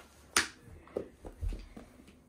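One sharp click about half a second in, then a few soft knocks: small cardboard boxes being handled in a clear plastic storage bin.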